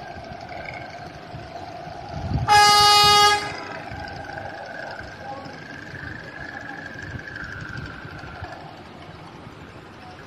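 A boat horn sounds one steady blast of about a second, some two and a half seconds in, over a steady drone of engine and wind.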